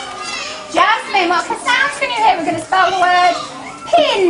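Young children's high-pitched voices talking.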